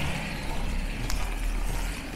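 A Toyota SUV driving away on a wet road, its engine rumble and tyre hiss fading, with a few rain drops ticking close by.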